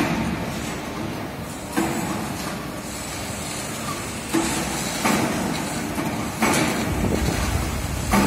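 Heavy factory machinery running with a continuous rumble, broken by several sudden clanks at irregular intervals.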